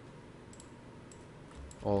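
A few faint, light clicks of a computer mouse over quiet room tone.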